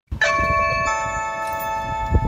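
Two-note doorbell chime: a bell-like note rings out, a second note follows about half a second later, and both keep ringing.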